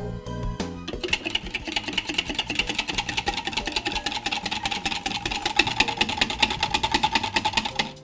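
Wire whisk beating chilled cream in a glass bowl, its wires clicking against the glass in rapid, even strokes that start about a second in. Background music plays before the whisking starts.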